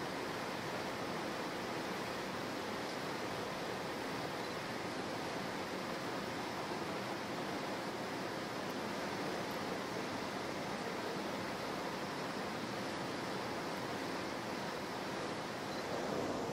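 A steady, even rushing hiss with nothing standing out in it.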